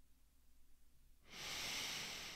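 A man drawing a slow, deep breath in close to the microphone, starting about a second and a half in.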